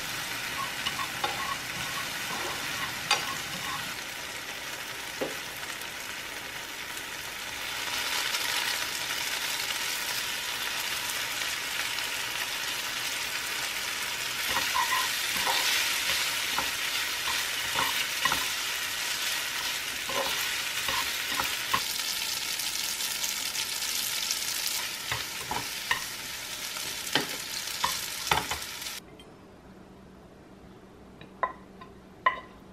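Garlic, onion and cherry tomatoes sizzling in oil in a nonstick frying pan, stirred with chopsticks that click and scrape against the pan. The sizzle grows louder about eight seconds in, spaghetti is tossed through it in the pan, and the sizzle cuts off suddenly near the end.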